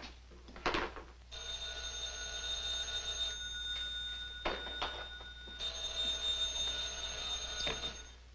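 A telephone's electric bell ringing twice, each ring about two seconds long, with a short knock before the first ring and another between the rings.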